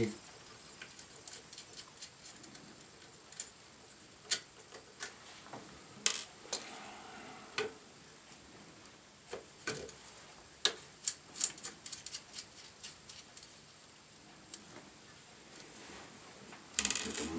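Scattered small metallic clicks and ticks, a dozen or so at irregular intervals and busiest in the second half, from a small hand tool and terminal screws being worked as the conductors are unfastened from the antenna's terminal board.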